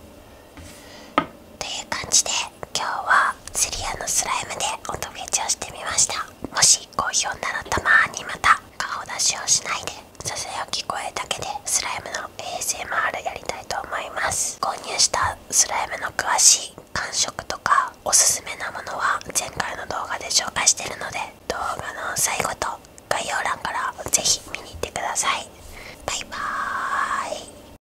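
A man whispering in Japanese close to the microphone. The whispering starts about a second and a half in and goes on with short pauses.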